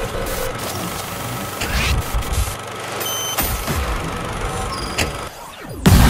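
Glitch-style channel intro sound effects: static crackle and digital noise over a faint steady tone, with a short electronic beep about three seconds in. The noise dips briefly near the end, and then a loud electronic dance track starts.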